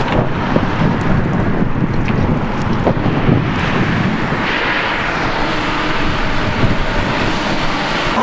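Wind buffeting an outdoor microphone through its windscreen: a loud, ragged, continuous rumble, with a brighter hiss swelling a little past the middle.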